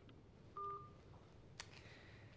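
A smartphone gives one short electronic beep about half a second in as the call is hung up, followed by a faint click about a second later.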